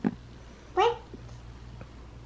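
A single short, high-pitched vocal sound from a young child, a little under a second in, after a light click at the start.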